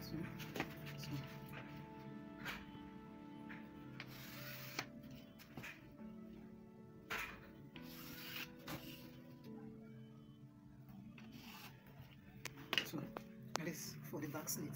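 Soft background music with long held notes, over intermittent rustling and scraping of cloth being smoothed and a ruler slid across a wooden cutting table.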